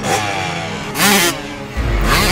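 Dirt bike engine sound effect revving, with a short loud burst of revs about a second in, over background music.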